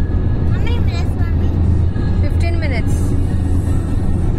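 Steady low rumble of a car driving at highway speed, heard from inside the cabin. Over it, a high voice rises and falls briefly, twice.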